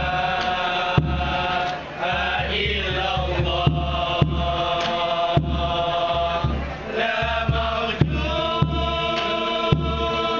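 A male group chanting selawat in unison, led on a microphone, with long held notes. Sharp, irregular slaps on kompang frame drums come through the singing about once a second.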